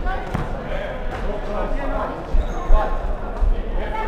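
Dodgeballs hitting and bouncing on a wooden sports-hall floor, several separate hits with the loudest almost three seconds in, ringing in the large hall, amid indistinct players' voices.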